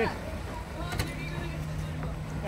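Low, rumbling outdoor noise with a steady low hum that comes in under a second in, and a single short click about halfway through; a voice says one word at the very start.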